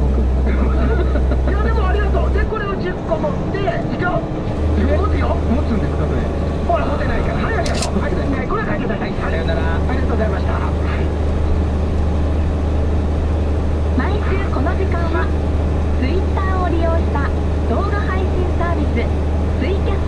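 Radio talk playing in a heavy truck's cab over the truck engine's steady low drone; the drone drops away briefly twice, about two and a half seconds in and again about eight and a half seconds in.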